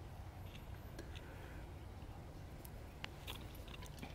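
Quiet room tone: a steady low hum with a few faint small clicks and handling noises, the sharpest click about three seconds in.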